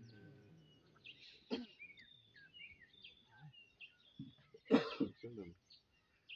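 Small birds chirping in short, quick calls during a quiet lull, with a brief burst of a man's voice or cough near the end as the loudest sound.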